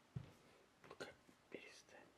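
Faint whispering in a quiet room, with a soft thump just after the start.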